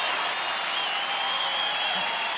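Audience applauding steadily, with a thin, high held tone faintly above the clapping.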